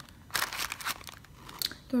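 Paper packaging rustling and crinkling as a small cardboard cosmetics carton is handled over tissue paper: one burst of about half a second, then a brief one near the end.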